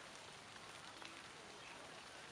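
Near silence: a faint, even background hiss with a few soft ticks.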